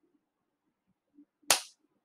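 A single sharp hand clap about one and a half seconds in, the first beat of a clapped rhythm in four-four time.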